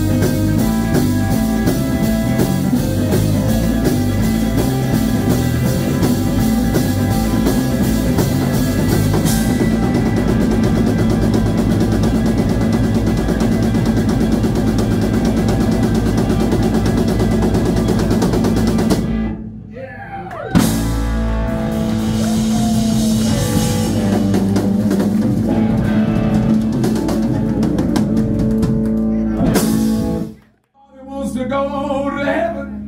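Live rock trio playing an instrumental stretch on electric guitar, electric bass guitar and drum kit. About two-thirds of the way through the band drops away briefly, a single sharp hit sounds, and the playing comes back in before cutting off at the very end.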